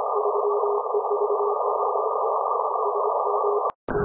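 Shortwave receiver audio from a Perseus SDR in CW mode: band noise hissing through the receive filter, with a faint tone at about 400 Hz keying on and off like Morse. Near the end the audio drops out briefly with a click as the filter is widened, and the hiss comes back broader.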